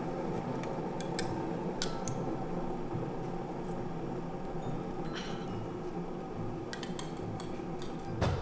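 A few light clinks of a ceramic coffee mug and spoon over a steady background hum.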